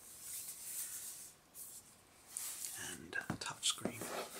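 Hands handling and turning over a metal-bodied laptop, a soft rubbing hiss against its casing, along with soft breathy whispering. There are a couple of light taps on the metal near the end.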